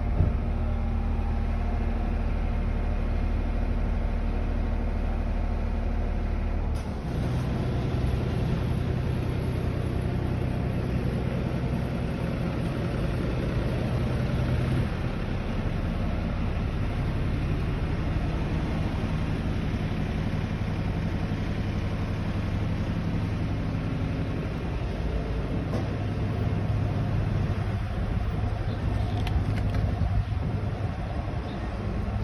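Street traffic noise with a motor vehicle engine idling close by, a steady low hum whose pitch pattern shifts about 7 and 15 seconds in.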